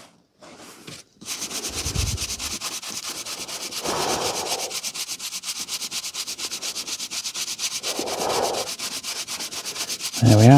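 A wooden-backed bristle brush scrubbed quickly back and forth across the page edges of an old paperback, cleaning them. It starts about a second in and keeps an even pace of about ten strokes a second.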